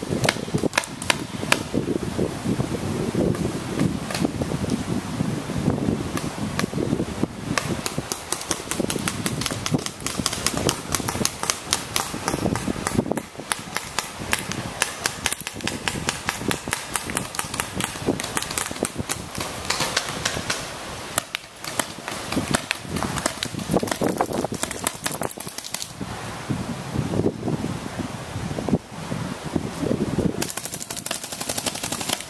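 Paintball markers firing during a game: many sharp pops in quick strings and bursts, thinning briefly around the middle.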